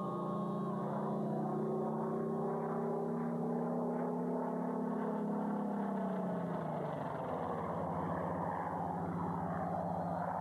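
Piston engines of WWII fighter aircraft in flight: a steady propeller drone that climbs slightly in pitch, then drops about six seconds in as the aircraft pass.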